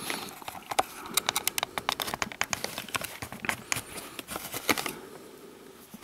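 Rustling of a clear plastic bag and a rapid string of sharp clicks and taps as battery cells and a plastic drill battery casing are handled, thinning out and getting quieter towards the end.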